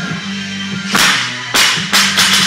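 A 205-lb loaded barbell with plates is dropped onto the lifting platform. It lands with a loud impact about a second in and bounces into a second impact half a second later, with a smaller knock just after, over background rock music.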